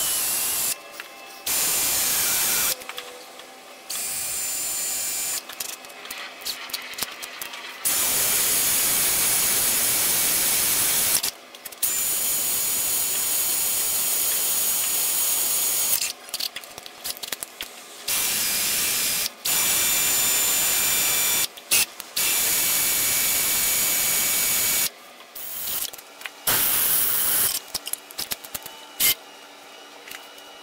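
Cordless drill running in repeated stop-start bursts of one to a few seconds, boring into the metal table of an old wood planer, with short pauses and clicks between the runs.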